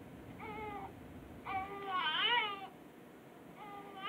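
Newborn baby crying in wavering wails: a short cry, then a longer, louder one about a second and a half in, and another starting near the end.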